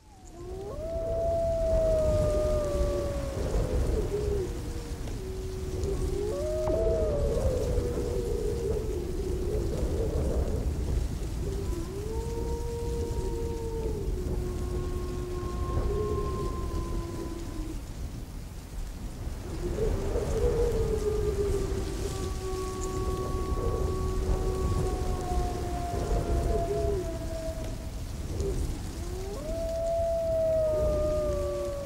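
Several wolves howling together: long calls that slide slowly in pitch and overlap at different heights, over a steady low rumble.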